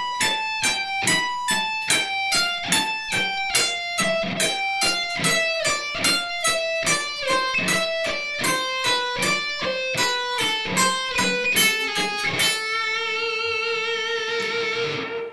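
LTD Deluxe electric guitar playing a slow single-string alternate-picking exercise: evenly picked notes, about three a second, stepping downward four notes at a time. Near the end it settles on one held note with vibrato.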